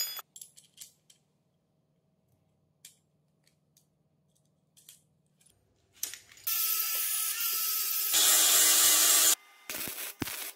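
Small metal brackets and bolts clink together at the start, followed by a few faint taps. About six and a half seconds in, a wire-feed (MIG) welder starts a steady crackling hiss that gets louder about a second and a half later and stops shortly before the end.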